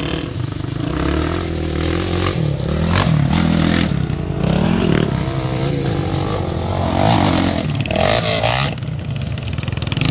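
Sport quad (ATV) engines revving as the quads ride over loose gravel, the engine note rising and falling repeatedly with the throttle.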